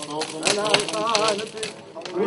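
Voices singing with wavering, held notes, with a few sharp clicks about half a second in.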